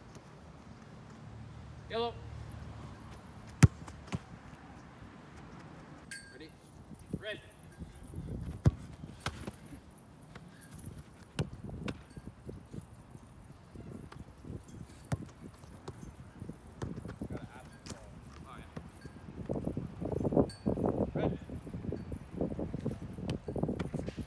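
Soccer ball strikes on a grass training pitch: two sharp, loud thuds a few seconds in and about five seconds later, among lighter thumps and scuffs of feet. A denser run of thumps and rustling comes near the end.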